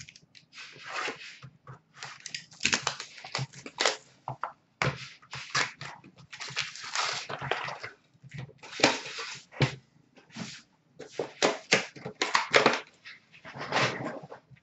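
Hockey card pack wrappers being torn open and crinkled, and cards and cardboard handled, in a run of irregular rustling and tearing bursts.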